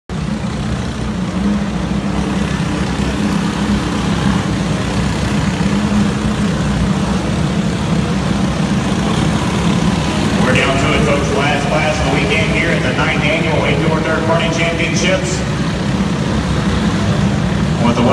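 Many racing kart engines running together in an indoor arena: a steady low drone as the field circles the track. From about ten seconds in, higher sounds that rise and fall in pitch join the drone.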